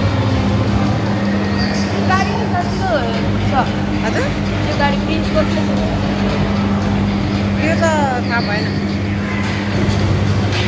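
A steady low hum runs throughout, with short voice-like calls about two seconds in and again near eight seconds.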